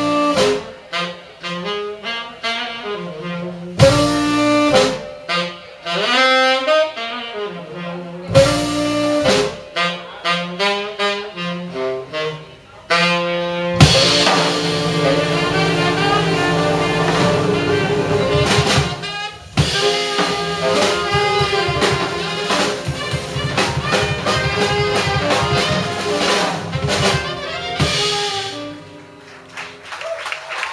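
Live jazz from three tenor saxophones with piano, double bass and drum kit. In the first half the band plays sharp hits together about every four seconds, with saxophone runs in between. About halfway through the full band comes in together with held horn chords and busy drums and cymbals, then the music drops away near the end.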